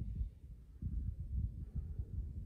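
Low, uneven outdoor rumble of wind on the microphone, slowed with the slow-motion footage, dipping in level about half a second in.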